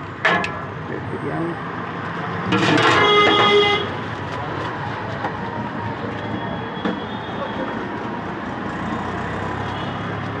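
Roadside traffic noise with a vehicle horn honking once for about a second, a little over two and a half seconds in, the loudest sound here. A sharp clack comes just at the start.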